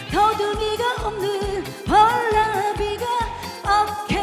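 Korean trot song amplified through a PA: a woman singing a melody that scoops up into its notes over a backing track with a steady beat of about two kick-drum thumps a second.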